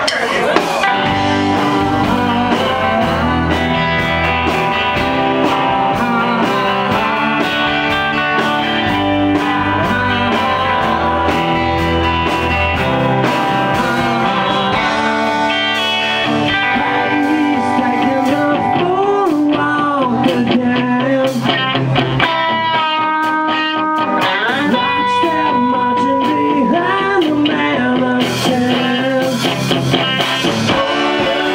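Live rock band playing: electric guitars, bass guitar and drums, loud and steady. The bass and drums drop out for about two seconds roughly two-thirds of the way through, leaving held guitar notes, and a voice sings in the later part.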